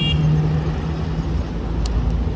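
Road traffic at a city intersection: a steady low rumble with a constant low hum running through it. A brief high tone sounds at the very start, and a single sharp click comes near the end.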